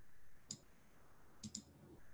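Faint computer mouse clicks: a single click about half a second in, then a quick double click about a second and a half in.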